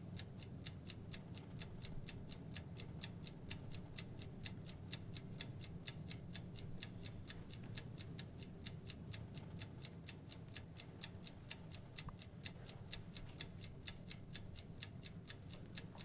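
Faint, quick, evenly spaced ticking of a clock over a low, steady room hum.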